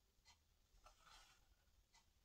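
Near silence with a few faint rustles of paperback pages being handled, the longest about a second in.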